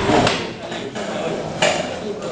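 Handheld microphone being handled and passed from one person to another: knocks and rubbing on the mic about a quarter second in and again near the end, over voices in the room.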